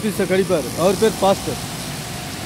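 A man speaking over steady traffic noise on a wet road; the talk stops about one and a half seconds in, leaving the hiss of traffic.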